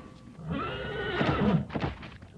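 A horse whinnying once, a loud cry lasting over a second, as its tail is bitten.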